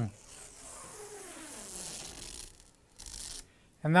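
Protective plastic film being peeled off a new refrigerator flapper door: a steady hissing rasp for about two and a half seconds, then a brief second rip about three seconds in.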